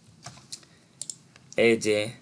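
A few faint, separate clicks at a computer, spaced unevenly, then a man starts speaking about one and a half seconds in.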